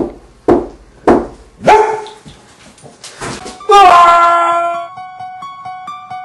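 Four sharp, loud hits about half a second apart, then a loud held cry that falls at first and settles on a steady pitch. Near the end a light, repeating keyboard tune begins.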